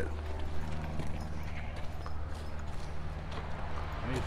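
Footsteps on a dry dirt path and grass: scattered soft, uneven knocks over a faint steady low hum.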